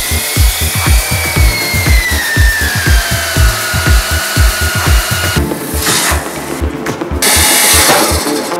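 Electronic dance music with a steady kick-drum beat and a rising and falling synth sweep, mixed with the sound of a water-cooled diamond core drill cutting brick. A loud rushing hiss swells over the last few seconds.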